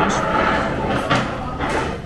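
A metal spoon scraping and clicking against a dish and sauce container as chili sauce is spooned out, with a few short sharp clicks.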